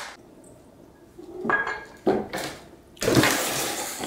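A cardboard box being pawed and scraped by a cat on a tile floor. There are two short scrapes in the middle and a louder, longer rustling scrape in the last second.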